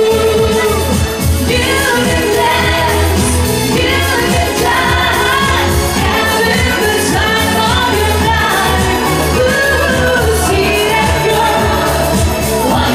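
A woman singing live into a handheld microphone over loud pop backing music with a steady bass beat.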